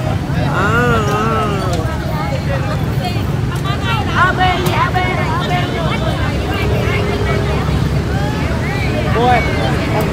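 Motorbike engine idling close by, a steady low rumble, with a crowd of people talking around it.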